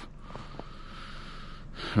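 A man drawing a breath in between sentences: a soft hiss lasting about a second and a half.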